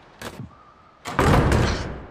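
Heavy wooden double doors opening: a short click early on, then about a second in a sudden loud, deep rush of sound that fades away.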